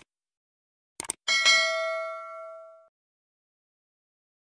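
Subscribe-button animation sound effect: a quick double mouse click about a second in, followed by a bright bell ding that rings out and fades over about a second and a half.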